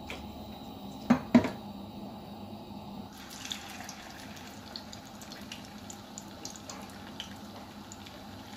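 Two sharp knocks about a second in, then a chicken doughnut frying in hot oil from about three seconds in: a steady crackling sizzle.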